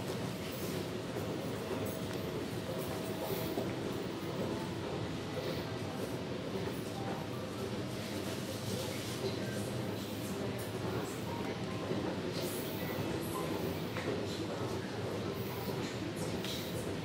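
Steady low ambient noise of an underground MRT station, with faint voices in the background.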